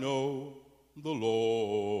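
Gospel singing: a man's voice holding long phrases with a wavering vibrato. One phrase ends about half a second in and the next begins about a second in.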